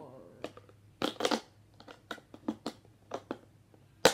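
Hard plastic clicking and knocking as a plastic lunch container lid is handled and its snap-in plastic fork and knife are pressed in and out of their slots: a cluster of louder clicks about a second in, then a string of lighter, irregular clicks.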